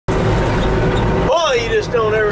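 John Deere 310SE backhoe's diesel engine running steadily as the machine drives, heard from inside the cab as a low rumble with a steady hum. About a second and a half in, the sound breaks off abruptly and a man's voice starts over the engine.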